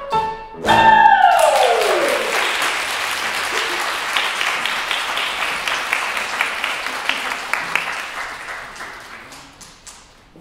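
A woman's voice ends the song on a loud held note that slides steeply down in pitch, and the audience breaks into applause that slowly fades away over the following seconds.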